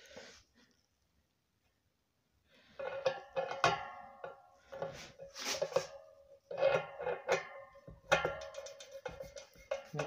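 Speedometer drive gearbox being turned by hand on a motorcycle's rear wheel spindle to seat it on the hub's drive dogs: irregular metal clinks and taps, each with a short ringing note. They start after about two seconds of silence.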